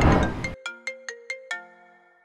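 Mobile phone ringtone: a quick melody of short, ringing pitched notes, five in a row, starting about half a second in, right after the tail of electronic music with a whooshing transition.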